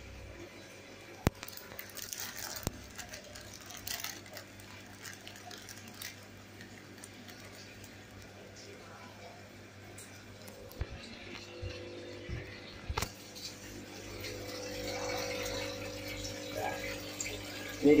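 Faint running and splashing water of a home aquarium, with scattered clicks and knocks from handling the phone. Over the last few seconds a steady hum with a couple of level tones comes in.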